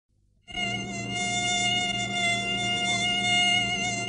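A mosquito's high whine that starts about half a second in and holds a steady pitch, over a low steady hum.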